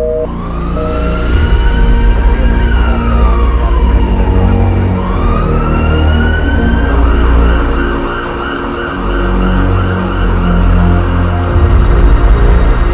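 Emergency vehicle siren that wails slowly up and down, then switches to a fast warbling yelp about seven seconds in, over a heavy low rumble.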